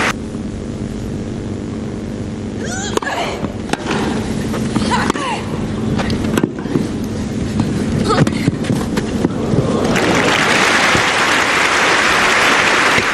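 Tennis rally on a grass court: sharp racket-on-ball strikes about once a second, some with a player's vocal grunt on the shot, then crowd applause rising near the end as the point is won.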